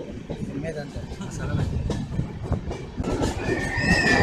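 Passenger express train running on the rails, with a steady rumble and the clatter of wheels over the track. About three seconds in it grows louder, and a long high wheel squeal sets in, sagging slightly in pitch.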